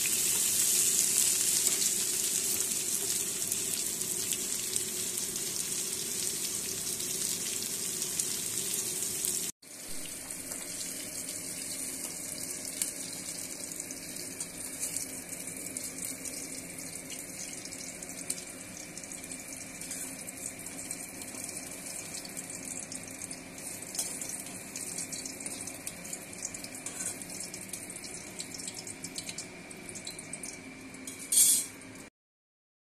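Pointed gourd pieces sizzling in hot oil in a steel karai, a steady hiss. It drops off abruptly about ten seconds in, then carries on softer.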